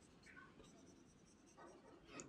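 Near silence, with faint strokes of a marker on a whiteboard as rows of small arcs are drawn.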